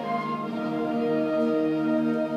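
Concert band of brass and woodwinds playing sustained, held chords.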